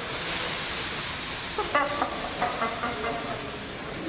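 Loose popcorn spilling and rustling out of a car's open door onto the floor, a steady rain-like hiss. Faint voices or laughter come in a few short bits from about two seconds in.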